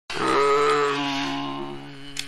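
A man's voice chanting one long, steady 'Om' at a low pitch; the open vowel softens into a hummed 'mm' in the second half.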